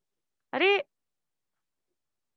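A woman's single short exclamation, 'arey', high-pitched and rising then falling in pitch, in otherwise dead silence.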